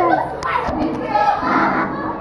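Several girls shouting and shrieking at once, loud and overlapping, with a low knock from the camera being handled a little before halfway.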